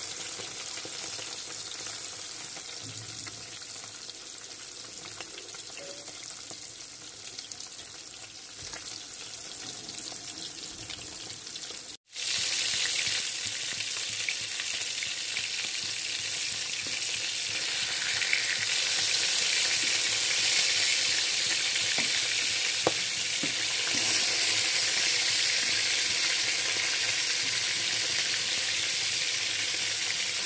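Fish pieces frying in hot oil in a pan, a steady sizzle. It cuts out briefly about twelve seconds in, then goes on louder.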